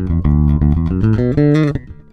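Electric bass guitar played fingerstyle: a quick run of plucked notes, a D minor pentatonic lick using the Dorian sixth, that stops shortly before the end.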